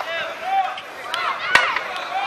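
Footballers' voices calling and shouting across the pitch, with one sharp knock about one and a half seconds in.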